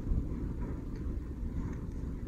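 Low, steady background rumble, with no distinct event standing out.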